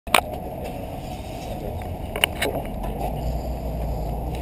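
Handling noise from a GoPro camera on a quadcopter frame as it is carried and set down: a few sharp knocks and bumps over a steady low rumble. The drone's motors are not running.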